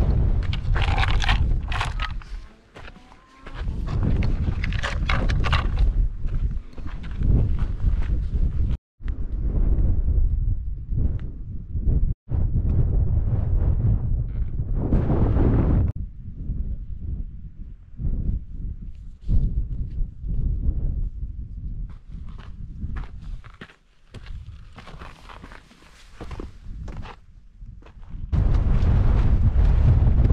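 Wind buffeting the microphone, with a hiker's footsteps on a rocky path. The sound cuts out abruptly twice, about nine and twelve seconds in.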